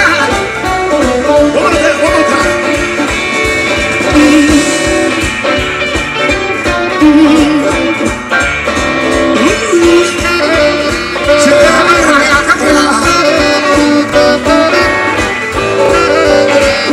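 Live blues band playing an instrumental stretch: electric guitar, bass, drums, keyboards and saxophone over a steady beat.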